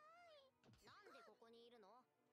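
Faint anime dialogue: a high-pitched girl's voice speaking Japanese, its pitch swooping up and down.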